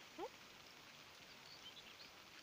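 A British Shorthair cat gives one short chirp that rises quickly in pitch, over a faint hiss of rain.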